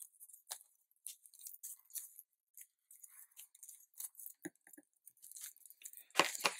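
Faint scratching and rustling of paper and tape backing as a metal pick works the ends of a double-sided tape's release liner free along the edge of a sheet of patterned paper. Short scratchy ticks throughout, growing busier near the end as the sheet is moved.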